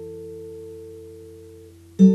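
Acoustic guitar chord left to ring: a few sustained notes slowly fading away, with the highest dropping out near the end.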